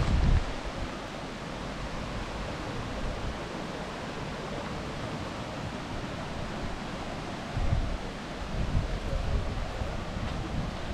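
Shallow, clear stream flowing and rippling over a weedy gravel bed: a steady, even rush of water. Low rumbles of wind on the microphone come in right at the start and again in the last couple of seconds.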